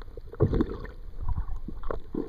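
Muffled water movement and bubbling against a camera held underwater while snorkeling, coming in irregular surges, the strongest about half a second in.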